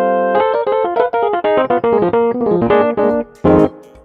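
Roland FA-06 workstation playing its '76 Pure' electric piano sound, modelled on a Fender Rhodes, with the struck-tine attack of hammers on tines. A sustained chord gives way to a quick run of melodic notes, and a short low chord about three and a half seconds in ends the phrase.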